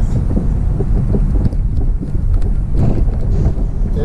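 A car driving slowly along a city street, heard from inside the cabin: a steady low rumble of engine and road noise.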